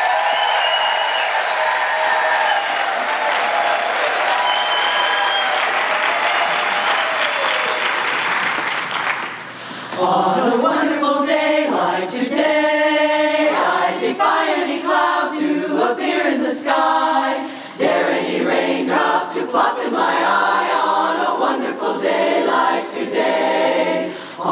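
Audience applause with some cheering for about nine and a half seconds, then a women's a cappella chorus begins singing in close harmony.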